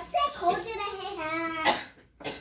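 A high-pitched voice calling without clear words, ending in a short harsh cough-like burst near the end.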